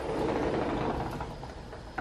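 Rustling handling noise from a handheld camera being carried and panned, fading after about a second and a half, with a sharp click at the very end.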